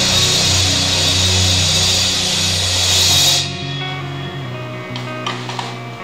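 Rock drum cover on a Mapex kit: heavy drums and crashing cymbals played over a loud rock backing track until about three seconds in, when the drums and cymbal wash stop. The backing track's guitar carries on alone, softer.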